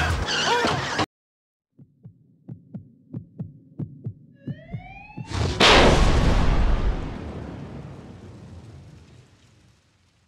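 Title-card sound effects: a run of deep thuds about three a second, like a heartbeat, a rising whoosh, then a loud explosion-like boom that dies away slowly over about four seconds. For the first second, the previous scene's soundtrack plays, then cuts off.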